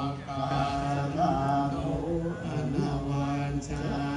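A group of Buddhist monks chanting together on a low, steady recitation tone, with a few rises and falls in pitch. This is the chanting that consecrates a newly made Buddha image.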